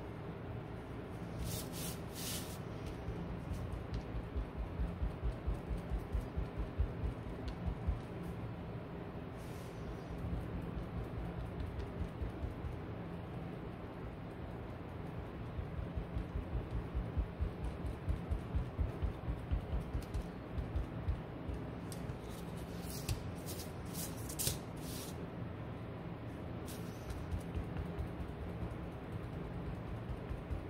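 Hand sanding small wooden cutouts: quick back-and-forth rubbing strokes, about three a second, in two spells, with a few light clicks of wooden pieces handled on the table.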